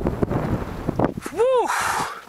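Wind buffeting the microphone, with a short pitched sound that rises and falls about a second and a half in, then a brief hiss.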